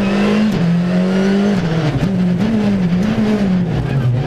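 Skoda Fabia R5 rally car's 1.6-litre turbocharged four-cylinder engine heard from inside the cabin, its note dropping about half a second in as the car slows for a right-hand hairpin, then rising and falling briefly and dipping again near the end as it takes the turn.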